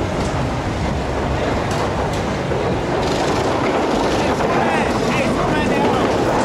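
Steady loud rumbling noise, with people yelling and screaming from about four and a half seconds in as the reverse bungee riders are flung up and swing.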